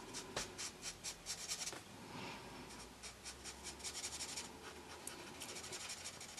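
Felt-tip marker nib rubbing on paper in quick back-and-forth colouring strokes, faint, coming in several short runs with brief pauses between them.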